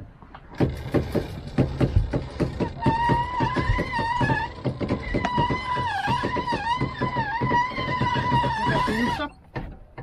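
Rope hoist on a sailboat's stern arch lifting an outboard motor: a fast, even run of ratchet-like clicks as the line is hauled in, joined about three seconds in by a high squeal that wavers and dips with each pull. Both stop together shortly before the end.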